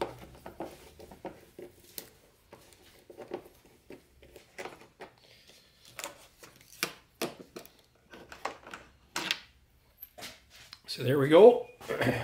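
Scattered light clicks and taps of a screwdriver and plastic snowmobile panel parts being handled while Torx screws are taken out.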